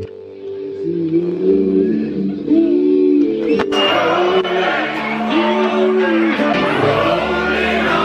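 Live band music with a man singing into a microphone, holding long sung notes. The sound changes abruptly about three and a half seconds in and carries on fuller.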